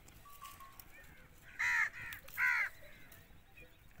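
A crow cawing three times in quick succession, about halfway through.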